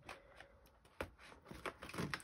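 Faint rustling of a clear plastic envelope and light plastic clicks as it is slotted into a desk hole punch, with a sharper click about a second in.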